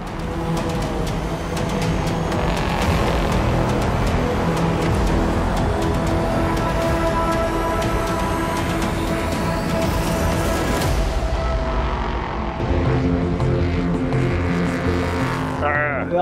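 Background music over an LMP3 prototype race car's Nissan V8 engine at speed, the engine note climbing in pitch as it accelerates for several seconds before dropping away about eleven seconds in.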